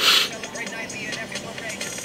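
Hockey highlights video playing through a laptop speaker: background music and indistinct voices, opening with a brief burst of hiss.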